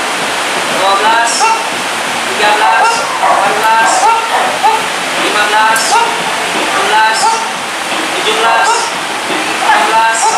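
A person's voice repeatedly calling short commands, about one every second, over a steady, loud rushing hiss.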